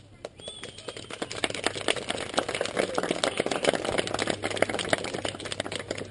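Applause: many hands clapping, starting just after the song ends, swelling to a peak midway and tapering off.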